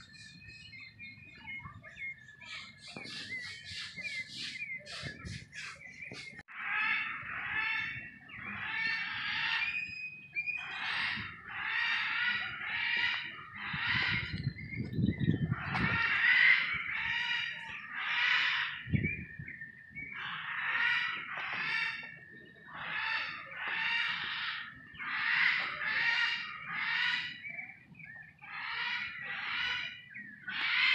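Birds calling: a quick run of chirps a few seconds in, then a long series of rough calls, about one a second, over a thin steady high tone.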